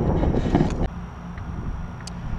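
Wind rumbling on the microphone, then an abrupt drop about a second in to a quieter, steady outdoor background with a faint low hum.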